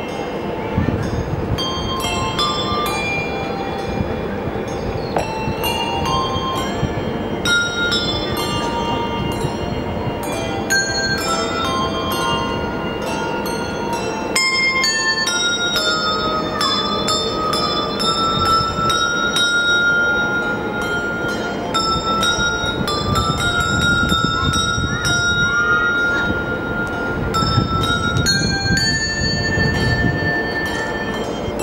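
Handbell ensemble playing a piece: many struck handbell notes ringing on and overlapping one another, carrying a melody, with some long-held high tones in the second half.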